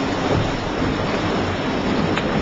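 Steady low rushing of wind and sea on the deck of a sailing yacht under way, with wind buffeting the microphone.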